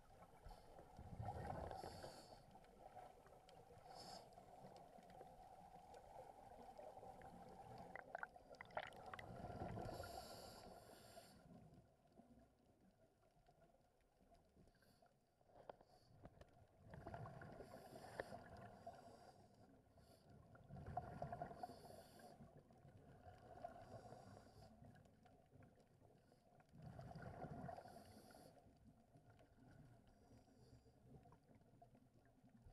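Faint, muffled underwater sound through a camera housing: scuba regulator exhalation bubbles rushing out in swells every few seconds.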